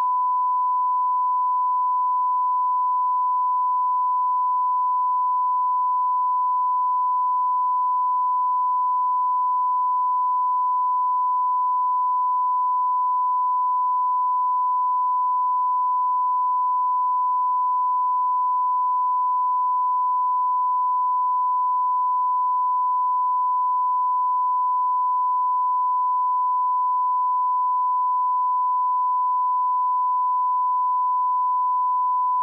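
Broadcast line-up test tone: a single steady pure beep held unbroken at one pitch, the reference tone that goes with colour bars while a feed is on test before the programme starts.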